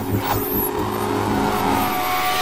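Intro sound design: a swelling whoosh of noise over steady low sustained tones, with a thin falling sweep near the start.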